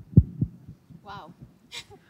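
Two heavy, dull thumps in the first half second, typical of a handheld microphone being bumped as it is taken in hand, followed by a brief vocal sound about a second in.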